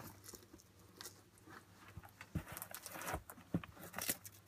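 Faint, scattered rustles and light clicks of leather basketball sneakers being handled as they are put on and their laces and straps adjusted, with a couple of duller knocks about two and three seconds in.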